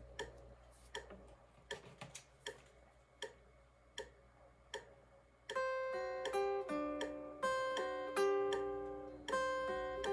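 Scattered light clicks for about five seconds. Then a semi-hollow electric guitar plays a single-note lead melody, with picked notes about two to three a second.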